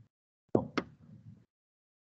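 A brief knock: a sudden onset about half a second in and a sharp click just after it, with a fainter tail that dies away within about half a second.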